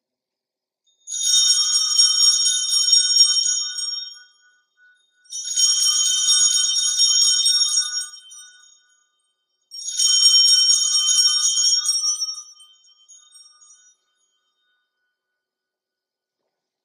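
Altar bells rung three times, each ring a shaken cluster of small bells lasting about three seconds: the customary signal at the elevation of the chalice just after its consecration at Mass.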